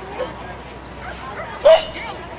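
A dog gives a single sharp bark near the end, over faint background voices.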